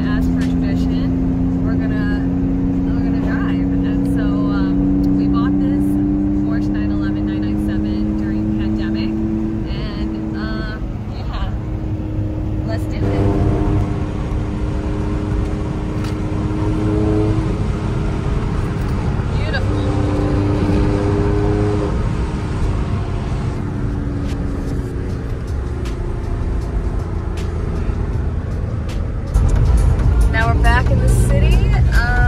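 Porsche 911's flat-six engine heard from inside the cabin while driving, with road noise. Its pitch climbs steadily for about ten seconds as the car accelerates, then holds at a few shifting steady notes.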